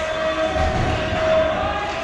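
Ice hockey game sounds in an indoor rink: skates and sticks on the ice and low thuds in the middle, over a steady hum that wavers slightly in pitch.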